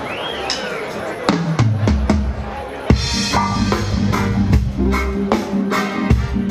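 Live reggae band starting a song: a few separate drum strokes and bass notes, then the full band with drum kit, bass and cymbals comes in about three seconds in.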